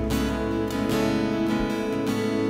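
Live worship-band music between sung lines: a guitar strummed over sustained chords and a low bass, with a fresh strum right at the start.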